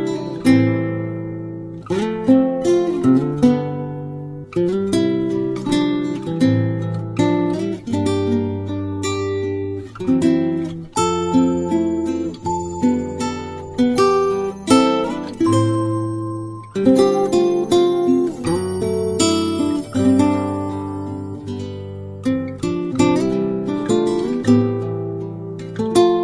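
Acoustic guitar music: plucked and strummed chords in a steady rhythm, each note ringing and dying away.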